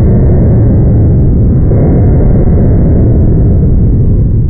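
Homemade pulse detonation engine running continuously: a very loud, unbroken deep drone, heaviest in the low end, that saturates the recording.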